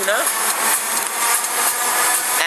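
Steady rushing noise of a car's cabin on the move: road and engine noise with no clear rhythm or change.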